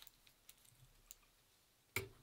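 Near silence with faint small clicks and ticks from hands handling hackle pliers and a feather at a fly-tying vise, and one sharper click near the end.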